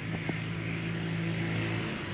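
A steady low engine hum with a rushing noise, like a motor running nearby. There are a few faint clicks in the first half second.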